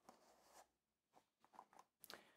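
Near silence, with a few faint soft rustles and taps of a cardboard watch box being slid open from its sleeve, about half a second in and again near the end.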